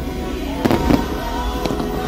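Aerial fireworks shells bursting in a handful of sharp bangs, about four across two seconds, over the show's music.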